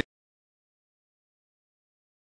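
Complete silence: the soundtrack cuts out abruptly at the start, clipping the last syllable of a man's speech.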